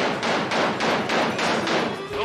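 Carnival shooting-gallery gun firing rapid repeated shots, roughly three a second, each a short sharp pop.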